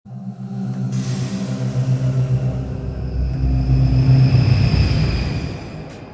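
Intro music sting for an animated logo: held low synth tones under a deep rumble, with a hissing swell coming in about a second in. It builds to its loudest around four seconds in, then fades out near the end.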